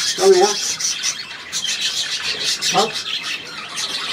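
A flock of budgerigars (budgies) chattering and chirping in an aviary: a steady, busy, high-pitched twitter. A man's voice makes two short sounds, one just after the start and one near three seconds in.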